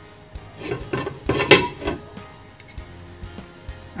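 Glass pan lid knocking and clinking against a frying pan as it is set and settled in place, a handful of short knocks about a second in.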